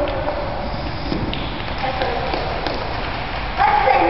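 Steady room noise in a large gymnasium, with faint voices and a few light knocks; a voice starts speaking near the end.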